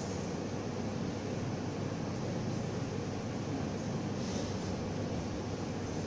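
Steady background hiss of room noise, even throughout, with no distinct events.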